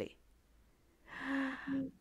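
A woman's breathy, gasp-like vocal sound with a faint voiced note, lasting under a second and starting about a second in, quieter than her speech.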